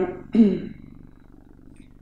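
A woman clears her throat once, briefly, just under half a second in, over a faint steady low hum.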